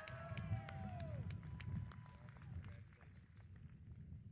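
Audience clapping and cheering, with several voices whooping in the first second or so, then thinning to scattered claps over a low rumble.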